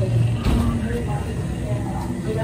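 Indistinct voices over a low, steady hum, with a single thump about half a second in.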